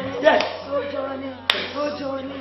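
One sharp hand clap about one and a half seconds in, over laughter and voices.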